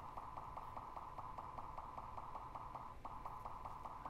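Straumann Virtuo Vivo intraoral scanner running during a scan: a faint, steady high-pitched hum with a rapid, even pulse.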